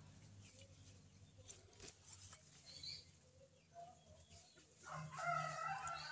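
A rooster crowing once, a single long call starting about five seconds in. Before it there is only faint outdoor background.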